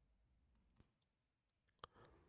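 Near silence: room tone with a few faint, short clicks, the clearest one near the end.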